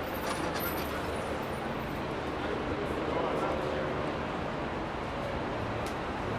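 Busy city street ambience: passers-by talking over traffic running by.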